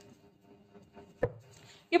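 A deck of tarot cards shuffled by hand, with faint soft card flicks and one sharp knock a little past a second in.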